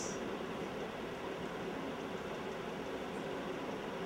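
Steady background noise of the recording, an even hiss and hum with no distinct sound, during a pause in speech.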